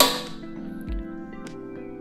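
A steel hammer strikes a socket seated on a freeze plug in a cast-iron 2JZ engine block once, right at the start. The metallic clink rings out for about half a second as the plug is driven into its bore. Background music plays under it.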